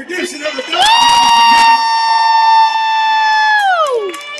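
A single voice lets out a long, high-pitched cheering whoop over crowd noise. It starts about a second in, holds one steady pitch for nearly three seconds, and drops sharply in pitch at the end.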